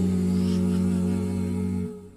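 A cappella vocal group holding the final chord of a song, several voices sustaining steady notes over a low bass voice, then cutting off together just before the end.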